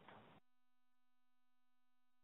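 Near silence on a conference-call line. A very faint steady hum-like tone starts about half a second in.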